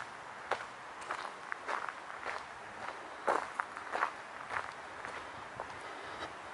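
Footsteps of a person walking at an even pace on a gravel and dirt path, about two steps a second.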